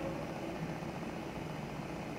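Steady low background noise, a hiss and hum, with no distinct event.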